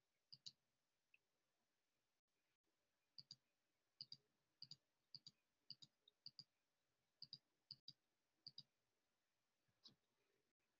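Faint computer mouse clicking: short clicks in close pairs, one pair near the start and then a pair about every half second from about three seconds in.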